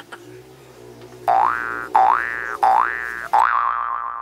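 Mobile phone ringing: an electronic ringtone of four quick rising swoops in a row, the last one held and slowly fading away.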